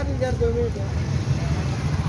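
Steady low rumble of street traffic, with a voice briefly near the start.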